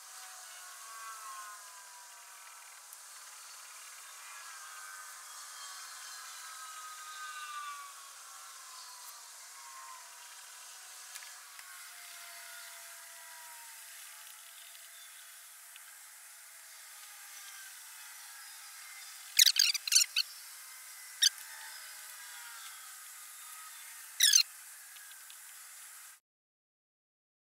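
Handling noise from working on a small sheet-metal furnace shell lined with ceramic wool: a quick cluster of sharp knocks a little past the middle, a single knock shortly after, and a pair near the end. Under them is a faint steady background with a few wavering tones.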